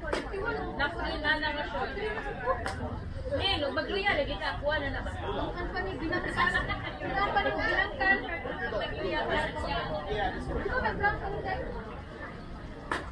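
Players' chatter on a ball field: several voices talking and calling out at once, overlapping, with a couple of sharp knocks, one at the very start and another about three seconds in.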